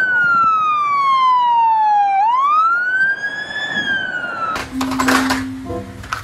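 Police car siren in wail mode: one long slow downward sweep, then a rise back up, cut off about three-quarters of the way through, when music takes over.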